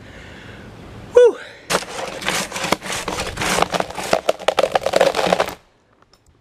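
Hand crosscut saw cutting through a log, a dense rasping noise full of sharp clicks that swells and eases with each stroke, starting about a second and a half in and cutting off suddenly near the end. Just before it, a short grunt or exhale.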